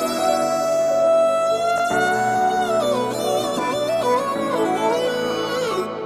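Background music: a slow melodic passage of sustained tones, the melody holding a long note and then wandering up and down from about halfway, fading away near the end.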